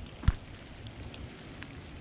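Faint outdoor background hiss with a single short, low thump about a quarter of a second in.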